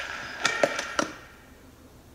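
Three sharp punches landing on a punching bag in quick succession, in the first second, then only faint room tone.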